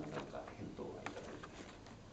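A man's voice trailing off at the end of a sentence, followed by a quiet room with a few faint clicks and light rustles, the clearest click about a second in.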